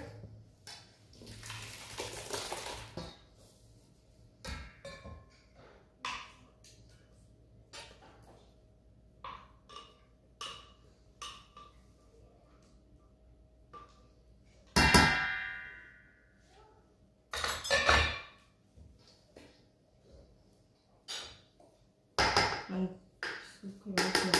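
Thick blended pepper sauce poured from a blender jar into a stainless steel mixing bowl, with a spatula scraping and tapping inside the jar. Several knocks of jar and utensil against the bowl; the loudest, about halfway through, leaves the steel bowl briefly ringing.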